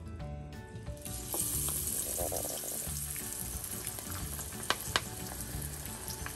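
Vegetable pakora batter, mixed vegetables and greens in gram flour, dropped into hot oil in a frying pan starts sizzling about a second in and keeps up a steady frying hiss. Two sharp pops from the oil come a little before the end.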